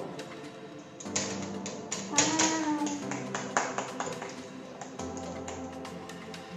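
Background music with a series of sharp taps and knocks, most of them between about one and four seconds in: a metal loaf pan knocking against a wire cooling rack as a freshly baked loaf is turned out of it.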